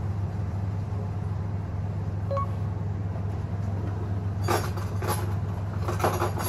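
Steady low mechanical hum, as from a kitchen appliance, with a few light clinks about four and a half seconds in and again near the end.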